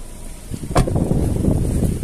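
A car door shut with a single sharp thud about a second in, followed by low rumbling wind and handling noise on the microphone.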